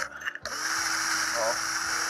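Cordless drill running with a rough-sided rasp drill bit grinding into an aluminium bracket, elongating a hole into a slot. The motor's steady whine and the grinding start about half a second in and hold steady.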